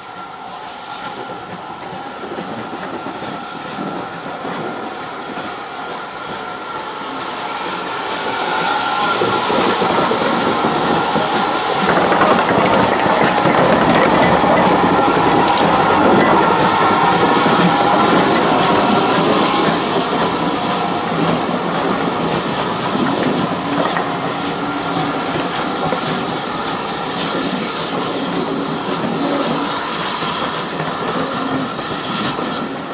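GWR 1500 class 0-6-0 pannier tank No. 1501 approaching and passing, hissing steam from its cylinder drain cocks. It gets louder until it draws alongside about twelve seconds in. The coaches that follow clatter over the rail joints with a run of clicks.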